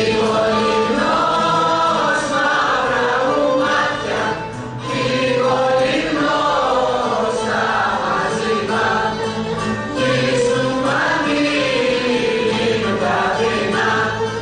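A group of women singing a Greek folk song together, in phrases with short breaks between them, over a steady low drone.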